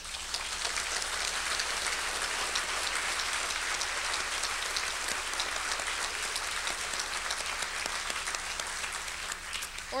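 Large seated audience applauding, a dense clatter of many hands that starts suddenly and thins out near the end.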